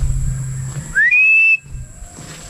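A single clear whistled call from a pet bird of prey, answering when it is called. The call rises in pitch and then holds level for about half a second, starting around a second in.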